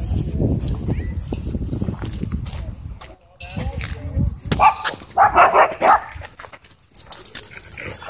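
Dogs in a playing group vocalizing: a short wavering call about three and a half seconds in, then a loud run of barks a little past the middle.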